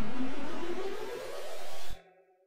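Logo intro sound effect: a rushing whoosh with a rising tone that dips about a second in, swells again, and cuts off abruptly near the end, leaving a brief ringing tail.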